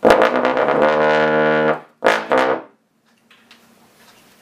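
Bach 50B single-valve bass trombone playing a fast, low chromatic triplet run, a long loud held note, then two short notes. The low B and C in the run are played as fake tones, notes a single-valve bass cannot reach normally.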